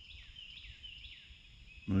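A bird singing: a quick run of short, high notes over soft outdoor background noise, with a man's voice starting near the end.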